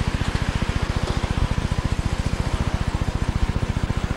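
Car engine idling: a rapid, even low pulsing throb.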